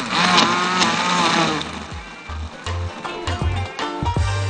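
Countertop blender running at full speed, pureeing frozen banana ice cream, apricots and milk, its motor pitch wavering as the load shifts. After about two seconds it drops back under background music with a repeated bass line.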